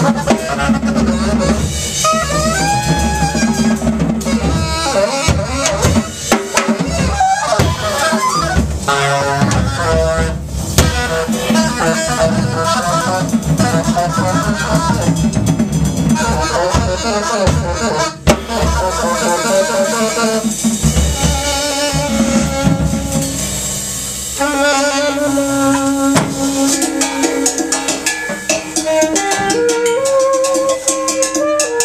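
Free-improvised duet of alto saxophone and drum kit: the saxophone plays fast runs and trills over busy drumming. About 24 seconds in, the drumming thins and the saxophone holds longer, wavering tones.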